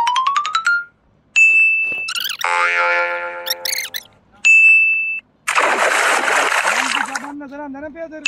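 A string of edited-in cartoon sound effects. It opens with a quick rising run of plinks, then has a bright ding twice, a wobbling boing with a buzzing tone, and a burst of noise lasting under two seconds.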